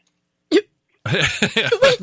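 A single short vocal burst about half a second in, then people laughing from about a second in.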